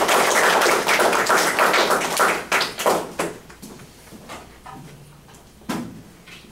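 Small audience applauding: dense clapping that thins out about two to three seconds in and dies away. A single thump near the end.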